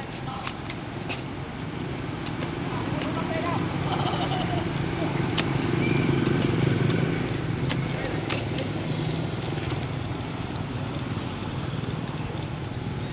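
A low, steady engine hum that grows louder toward the middle and then eases off a little, with scattered light clicks and ticks over it.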